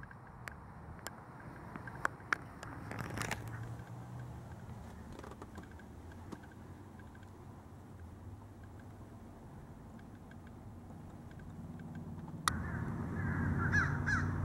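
A quiet stretch with a few sharp clicks in the first few seconds, then a sudden jump about 12 seconds in to a steady engine idle: the 2004 Honda Accord's 3.0-litre VTEC V6 running under the open hood. Bird calls are heard over the idle near the end.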